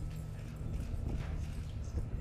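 Ambience of a seated audience under a tent: a low steady rumble with a few faint, scattered clicks and knocks.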